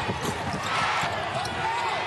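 Steady basketball arena crowd noise during live play, with a ball bouncing on the hardwood court.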